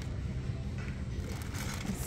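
Store room tone: a steady low hum, with faint rustling of a plastic bag being picked up by hand.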